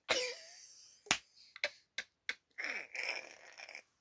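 A woman's silent, breathy laughter: a short sound at the start that fades away, a few sharp clicks, then a longer breathy laugh starting about two and a half seconds in.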